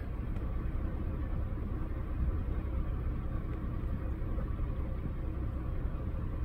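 A vehicle's engine idling with a steady low rumble.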